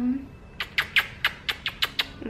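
A run of quick kisses on a baby's neck: about eight short, sharp lip smacks over a second and a half.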